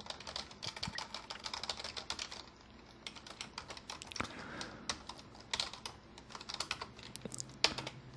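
Computer keyboard being typed on: a run of quick, irregular keystrokes, faint, with a short pause about two and a half seconds in.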